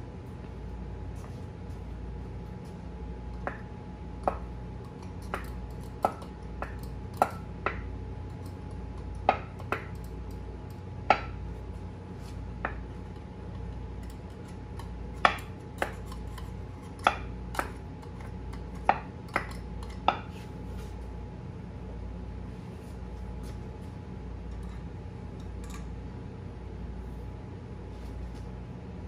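Sharp metallic clicks and clinks, irregularly spaced and mostly in the first two-thirds, from a ratchet wrench turning the centre screw of a three-jaw wheel puller set on a cast-iron flywheel, pulling it off the crankshaft. A steady shop hum runs underneath.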